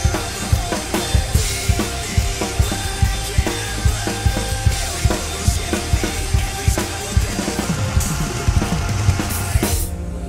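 Acoustic drum kit played hard in a rock beat, kick drum, snare and cymbals, over a recorded electronic rock backing track. Near the end a final loud hit, after which the drums stop and only the backing track's sustained synths carry on.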